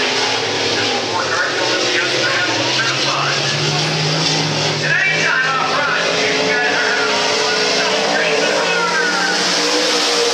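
Two Pro Stock dirt-track race cars' V8 engines running hard around the oval. Their pitch rises and falls as they accelerate out of the turns and lift going into them.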